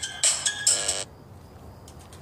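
A bright electronic tune of short, ringtone-like notes, which stops suddenly about a second in. Only faint background noise with a few soft ticks follows.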